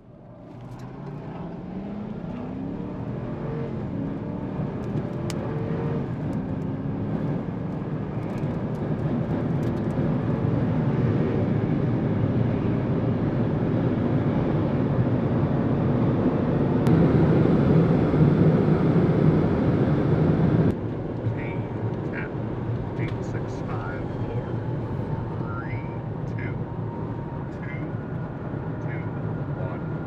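U-2S turbofan jet engine spooling up for takeoff, its rising whine climbing over the first few seconds into loud steady jet noise that peaks as the aircraft climbs out. The sound drops suddenly about two-thirds of the way through to a quieter steady engine noise.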